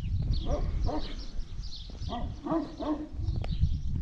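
A dog barking several times in short barks, a few about half a second in and more about two seconds in, over a low steady rumble.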